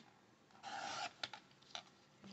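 Fiskars paper trimmer's blade carriage sliding along its rail and cutting through a sheet of paper: one short stroke about half a second long, followed by a few light clicks.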